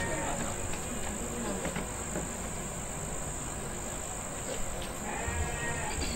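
Steady high chirring of crickets, with a few faint, wavering voice sounds: near the start, about two seconds in, and near the end.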